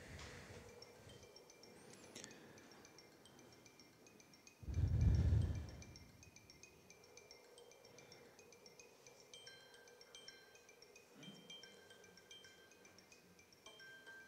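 Soft chime-like background music from a promotional video, played through the room's loudspeakers: short, high bell-like notes. About five seconds in, a loud low rumble lasts about a second.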